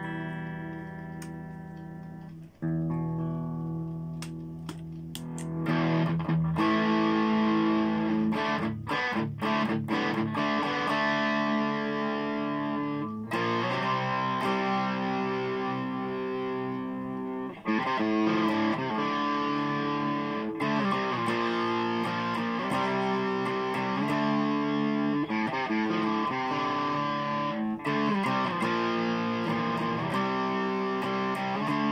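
Kit-built Jackson Dinky-style electric guitar played through distortion: sustained chords and riffs, quieter ringing notes for the first few seconds, then louder playing from about six seconds in, with a few brief stops.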